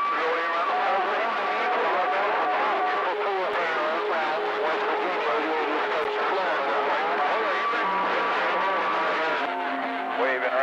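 CB radio receiver audio with several distant stations talking over one another at once, garbled and unreadable. A steady whistle sits over them for the first three seconds and again near the end.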